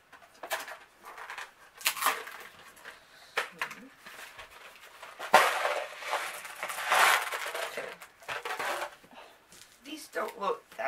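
Cardboard candy box being torn open and handled in irregular rustling, crackling bursts, with a sharp crack about halfway through followed by a couple of seconds of denser rattling and rustling as small chewy candies are tipped out onto paper.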